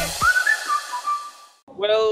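The end of a news programme's intro jingle: the beat cuts off and a high, whistle-like melody of a few stepping notes rings on, held on its last note, then fades. A man starts speaking near the end.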